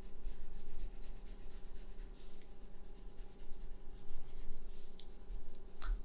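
Coloured pencil scratching across paper in a run of quick, short drawing strokes.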